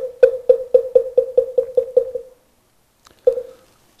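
Moktak (Korean Buddhist wooden fish) struck in a quick run of about ten hollow knocks, about four a second, fading away, then a single last knock near the end. This is the roll that leads into liturgical chanting.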